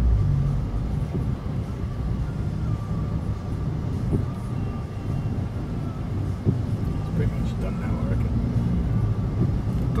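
Steady low rumble of a vehicle's engine and running gear, heard from inside the cabin as it drives slowly along a flooded road.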